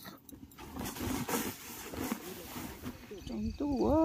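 Threshed rice grain rustling as it is scooped with a metal bowl and tipped into a woven plastic sack, with voices. Near the end a faint steady insect chirping starts and a loud drawn-out voice dips in pitch and then holds level.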